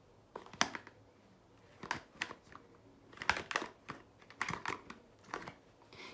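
Small cardboard cosmetics box being handled and closed, with its flaps tucked shut: a string of light, irregular clicks, taps and scrapes of cardboard.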